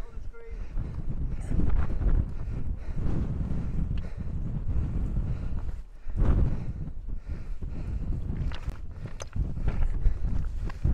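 Gusting wind buffeting the camera microphone: a low rumbling noise that swells and dips throughout.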